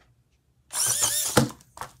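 Small electric motor and drivetrain of a 1/24-scale RC rock-crawler bouncer running on a 3S battery, whining up and down in pitch as it is driven hard for under a second. A sharp knock ends the run, followed by a brief second burst of whine.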